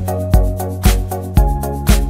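Background music with a steady electronic beat of about two beats a second over sustained bass and chord notes. The bass line changes about one and a half seconds in.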